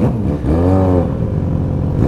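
Motorcycle engine revved once, sharply up and back down about half a second in, a rev that shot a flame out of the exhaust, over the steady running of the idling bikes.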